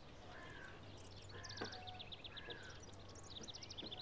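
Faint birdsong: quick runs of short, high chirps, with a few brief whistled notes between them, over a low steady hum.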